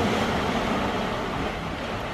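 Small waves washing onto a sandy shore, a steady rushing hiss that fades slightly.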